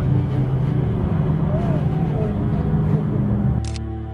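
Race plane's six-cylinder Lycoming piston engine and propeller running at high power as it flies through the course, heard live with a steady low drone and a voice over it. Music comes back in near the end.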